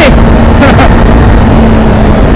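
Kawasaki Ninja 400 parallel-twin engine running at a steady cruising speed, a constant engine note under heavy wind rush on the microphone.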